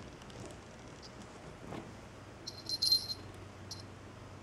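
Small bell on a hanging plush toy mouse jingling as a cat plays with it: a short burst of high jingles about two and a half seconds in, then one brief jingle shortly after.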